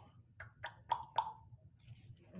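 A few faint, sharp clicks about a quarter second apart, the last two with a brief ringing tone.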